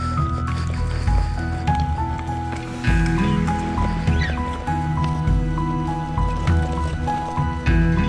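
Background music: a repeating melody of short, evenly spaced notes over a sustained bass and steady beat, filling out and getting louder about three seconds in.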